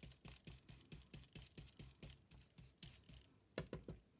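Stencil blending brush working Distress Ink through a plastic stencil onto cardstock: faint, quick, even brushing strokes, with a couple of louder taps near the end.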